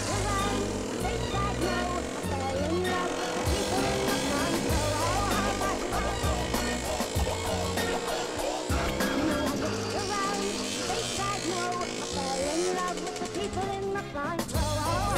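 Hip hop backing track with a repeating bass line and rap vocals, a long tone rising slowly through the first part.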